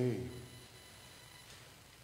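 A man's voice ends a spoken word, its echo in the room dying away within about half a second. Then quiet room tone with a faint steady hum.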